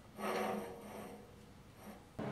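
Round steel tube sliding inside a square steel tube: one stroke of metal scraping on metal, under a second long.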